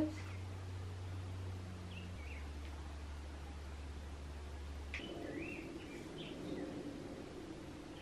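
Quiet room tone with a few faint bird chirps, once about two seconds in and again around five to seven seconds in. A low hum drops in pitch about two seconds in and stops about five seconds in.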